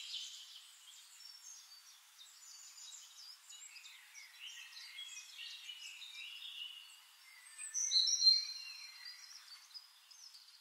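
Several small birds chirping and singing, faint through the middle, with a louder burst of song about eight seconds in.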